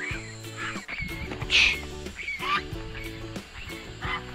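Background music with steady held notes, over which domestic geese give a few short honking calls, the loudest about a second and a half in.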